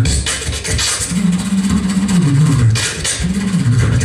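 Voice percussion (beatboxing) into a microphone: a dense, steady stream of clicking, hi-hat-like mouth sounds over a low bass tone that slides downward in pitch, twice.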